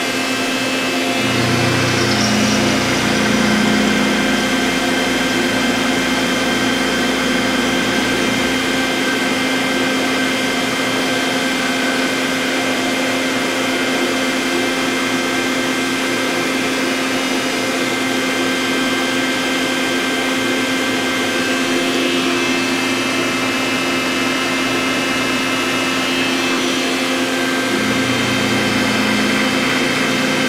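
CNC milling center machining a steel index plate: a steady whine from the spindle and cutter with several held tones, and a deeper hum that comes in about a second in, fades out later and returns near the end.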